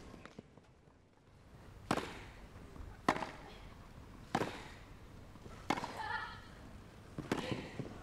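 Tennis ball struck by rackets in a baseline rally: five sharp pops spaced about a second and a half apart.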